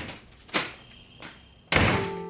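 A couple of lighter knocks, then a door slams shut near the end, the loudest sound.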